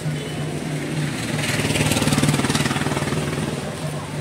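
Engine of a motor vehicle running close by with a rapid pulsing beat. It grows louder to a peak about two seconds in, then fades, as if passing.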